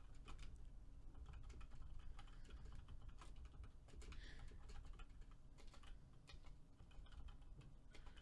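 Faint typing on a computer keyboard: a run of quick keystrokes with short pauses between bursts.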